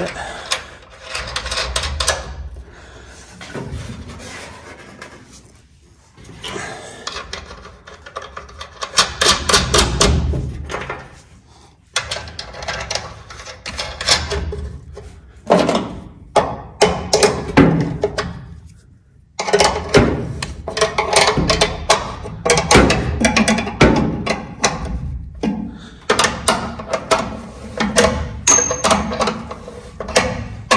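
Metal clinks and knocks from a wrench and a battery hold-down bracket as the bracket is fitted over the battery and its nut is tightened, coming in irregular bursts with short pauses.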